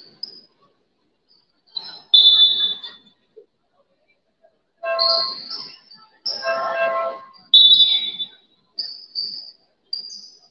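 Sounds of a women's basketball game on an indoor court: short high squeaks of sneakers on the hardwood and players' shouts, in separate bursts with pauses between.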